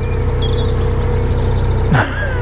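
A steady engine hum running at idle, with a constant tone above it. A few short bird chirps sound in the first second.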